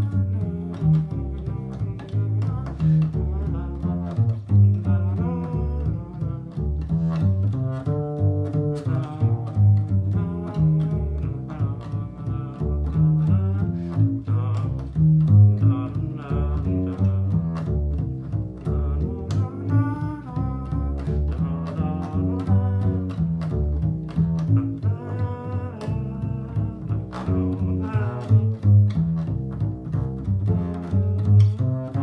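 Upright double bass played pizzicato, an unaccompanied improvised bass line: a steady stream of plucked low notes, a few a second, that runs on without a break.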